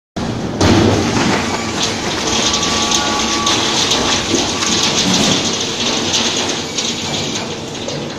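Industrial metal shredder for waste drums and paint buckets running, giving off a loud, dense grinding and crackling noise that swells about half a second in and eases slightly near the end.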